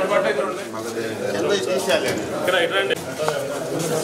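Indistinct talk from several people at once in a room, none of it clear speech.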